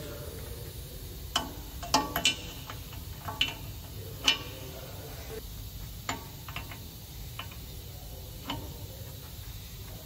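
Metal tools clinking as a socket and breaker bar are fitted onto an exhaust NOx sensor: a scatter of sharp taps, the loudest a little past four seconds in, over a steady low hum.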